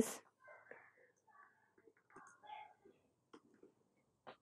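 Very faint, whispery mouth sounds and breaths with a few soft clicks scattered through the quiet.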